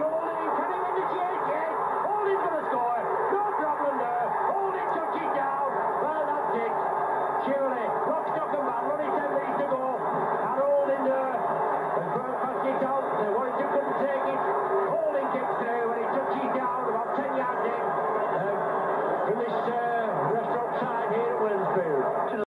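Stadium crowd of many voices cheering and chanting steadily.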